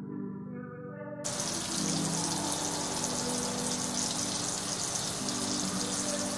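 Bathroom sink tap turned on about a second in and running steadily, a loud even hiss over soft background music.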